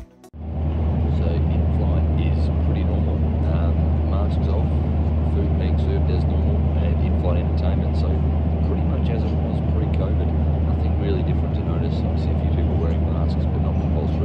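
Loud, steady rumble of an airliner cabin, cutting in suddenly just after the start, with a man's voice close up and other passengers' voices under it.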